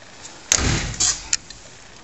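Door of a stripped Mazda RX2 shell being handled: a sudden clunk with rattle about half a second in, then two sharp clicks.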